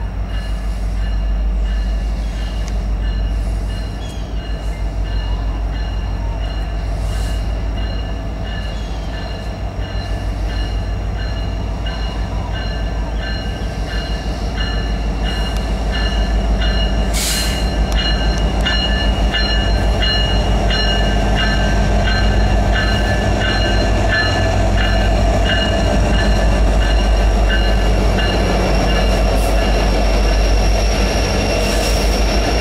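Norfolk Southern diesel freight locomotives pulling a train of oil tank cars approach and pass, the engines running with a steady low rumble that grows louder over the second half as they draw alongside. From about halfway there is rapid regular clicking of wheels over the rails, with steady high wheel squeal and a brief hiss just past halfway.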